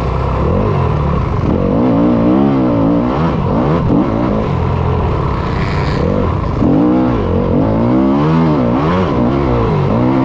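Yamaha YZ250FX 250cc four-stroke single-cylinder dirt bike engine under race load, heard from on board. The revs repeatedly climb and drop as the rider works the throttle and gears across a rough field.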